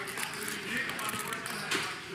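Faint background voices of players around a poker table, with scattered soft clicks of casino chips being handled.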